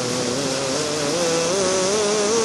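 A man's voice holding one long note of melodic Quran recitation, steady at first and then wavering up and down in small ornaments in the second half, over the steady rush of a small waterfall and river.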